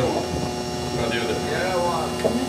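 Steady electrical hum from the amplifiers and electronic gear, with faint voices in the room.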